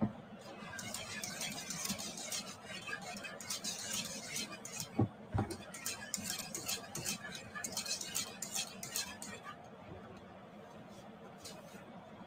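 Wire whisk clicking and scraping against a pan while a thick white sauce is stirred, rapid irregular ticks with a couple of heavier knocks about five seconds in. The whisking stops a couple of seconds before the end.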